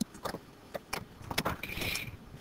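Several faint, scattered clicks and a brief rustle near the end: handling noise from a computer mouse or pen tablet as a new page is brought up on screen.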